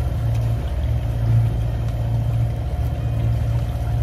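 Steady low drone of a boat's engine running under way at sea, even in level with no change.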